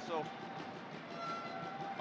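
Crowd hubbub in a gymnasium, with a faint steady horn-like tone held for over a second in the middle.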